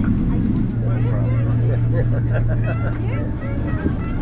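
Steady low drone in an airliner's cabin as it taxis after landing, the jet engines at idle, with voices talking over it.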